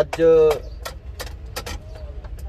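A short spoken word from a man near the start, then a handful of light, sharp clicks scattered over a steady low rumble in the truck cab.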